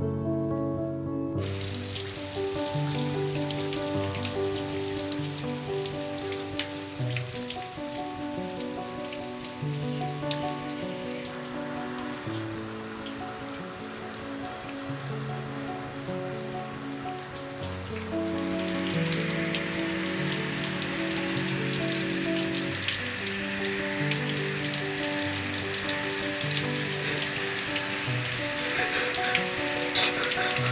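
Shower spray running steadily onto skin and tile, starting about a second in and growing louder about two-thirds of the way through. Under it, a slow film score of sustained notes.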